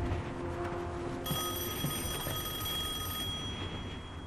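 Old wall-mounted telephone bell ringing, one continuous ring of about two seconds starting a little over a second in, over a low background rumble.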